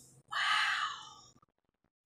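A woman blowing out a breath through pursed lips, a breathy "whew" of amazement lasting about a second.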